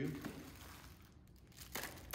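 Crinkling and rustling as a hand rummages in a reusable tote bag to take out candy, louder for a moment near the end.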